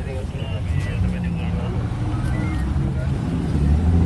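People talking at close range in a street crowd, over a steady low rumble.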